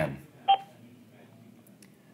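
A single short electronic beep from an Avaya 1416 IP desk phone about half a second in, as its conference key is pressed to bring a third party into the call, then quiet room tone.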